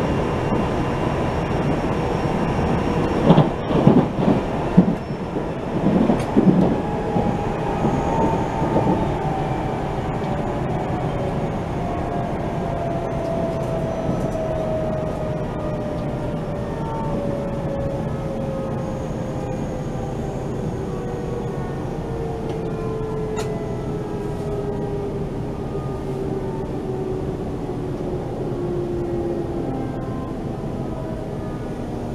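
Steady rolling rumble inside a JR Central electric train with a faint whine falling steadily in pitch as it slows for a station stop. There is a short run of loud wheel knocks and clatter over the track about three to seven seconds in.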